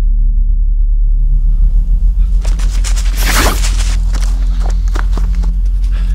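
Film sound design: a deep, steady rumble, with a loud whoosh that swells and fades about three seconds in. Quick footsteps follow, rising after the whoosh.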